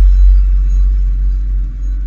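Logo-intro music sting: a loud, deep bass rumble held after the opening hit, slowly fading, with faint high electronic tones above it.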